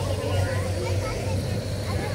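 A steady low hum with a constant mid-pitched tone, under indistinct people talking.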